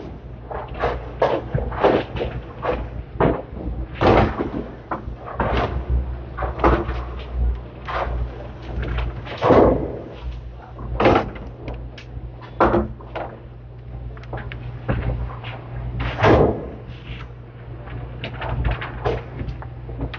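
Candlepin bowling in play: thin balls land and roll on the synthetic lanes, and pins crash and clatter in irregular bursts, several of them loud. A steady low hum runs beneath.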